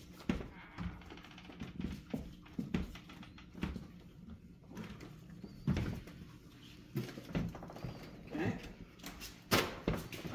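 Handling noise from a large foil-covered blimp envelope being carried through a doorway: irregular knocks and thumps with rustling of the envelope's cover, along with footsteps.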